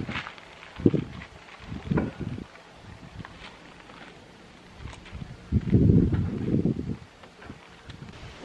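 Microfiber towel rubbing over a painted car bonnet in a few wiping strokes, buffing off a spray-on quick coat; short strokes about one and two seconds in, and a longer, louder one about six seconds in.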